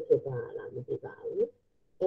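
A person's voice speaking over a video call, which stops about three-quarters of the way through.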